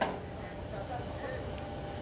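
Faint, indistinct voices over a steady low background hum, with a short click at the very start.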